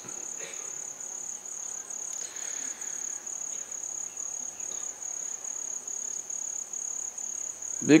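Crickets chirping: a steady, high, continuous trill.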